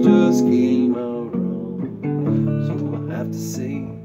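Steel-string acoustic guitar strummed, its chords ringing on with a few sharper strokes.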